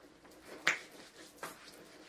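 A few quiet clicks: one sharp snap-like click about two-thirds of a second in, and a fainter one in the middle.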